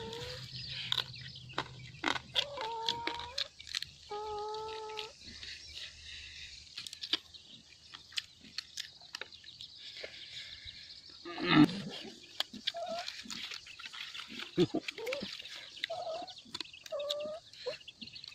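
A man eating with his fingers close to the microphone: wet chewing and lip-smacking, with a few short hummed tones, one louder mouth noise about two-thirds of the way through, and a brief laugh near the end.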